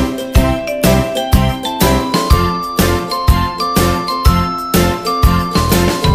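Background music with a steady beat of about two strokes a second and a tinkling, bell-like melody.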